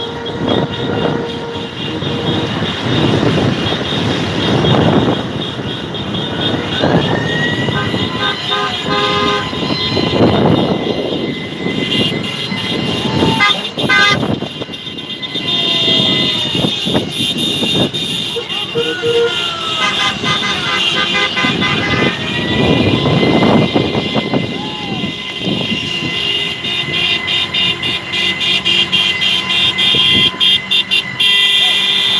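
Car horns honking over and over in a slow-moving motorcade, with wind buffeting the microphone of the moving vehicle in repeated swells.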